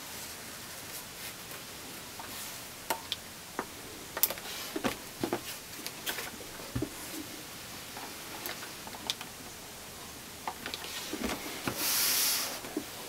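Faint, scattered light taps, clicks and soft rustles of a small iron being moved and set down on a wool pressing mat while a cotton binding strip is handled.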